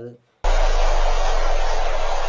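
A loud, steady rushing noise cuts in suddenly about half a second in and holds even to the end.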